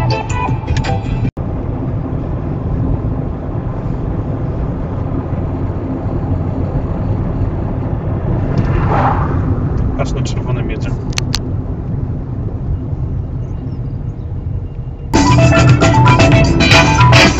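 A vehicle driving: a steady low rumble of engine and road noise heard from inside the cab, with a brief swell around the middle and a few short clicks soon after. Music with speech plays briefly at the start and comes back loud near the end.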